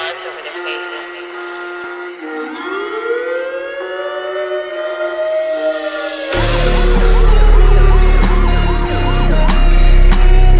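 Electronic big-beat music: held synth tones with a siren-like synth glide that rises and falls. About six seconds in, a heavy bass line and drum beat come in, much louder.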